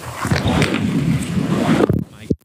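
Skis sliding and scraping along a terrain-park rail, a loud grainy grinding that builds from the start and cuts off abruptly with a knock just before the end.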